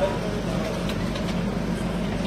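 A steady low hum and rumble under faint, indistinct voices, with a couple of light clicks about a second in.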